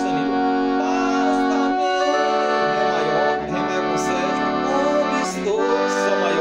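Piano accordion playing sustained chords as a song's harmony accompaniment. The chord changes about two seconds in and again shortly before the end.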